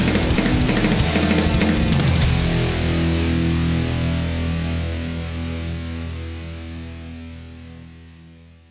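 Rock music with guitars and drums that stops on a final chord about two seconds in. The chord rings on and slowly fades out.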